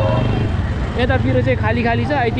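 Street traffic, with motorcycles running past close by and a steady low engine rumble underneath. A steady tone ends just after the start, and a voice comes in about a second in.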